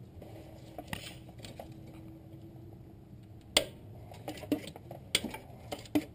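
Metal clinks of a wrench being worked on the alternator adjuster's 12 mm lock nut to break it loose: sparse taps, one sharp click about three and a half seconds in, and a few lighter clicks near the end.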